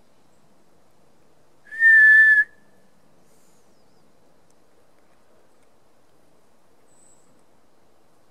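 A single loud whistled note, steady in pitch and just under a second long, about two seconds in: a person whistling a call into the woods to try to draw a response.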